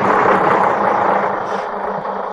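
A city bus pulling in to a stop, a steady rush of engine and road noise that eases slightly.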